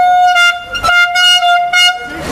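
Red plastic party horn blown in long, steady blasts at a single pitch, broken by a few short gaps and stopping just before the end.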